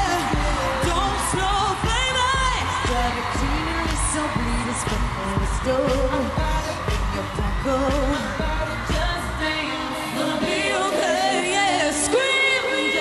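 A woman singing live into a handheld microphone over an electro-pop dance track with a steady pulsing beat. The bass drops out for a moment near the end.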